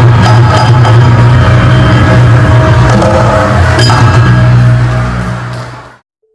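Javanese gamelan music: struck metallophone notes ring over a deep, steady low hum, fading out near the end.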